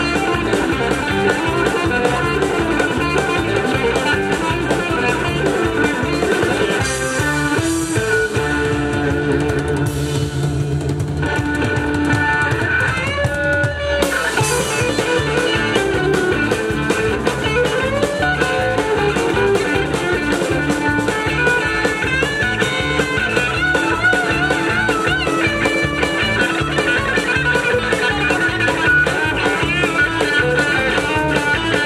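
Live rock band playing an instrumental break: electric guitar lead with bent notes over electric bass and a drum kit keeping a steady beat. About seven seconds in, the bass settles on a long held low note for several seconds before the groove resumes.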